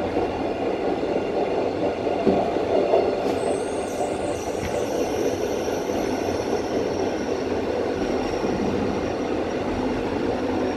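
Electric commuter train running on the track, heard from inside the rear cab: a steady rumble of wheels on rail. A thin, high-pitched squeal sets in about three seconds in and fades near the end as the train pulls into a station platform.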